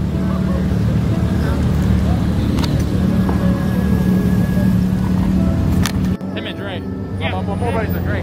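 Car meet background: car engines running among voices and music. It changes abruptly to quieter surroundings about six seconds in, and a man's voice follows.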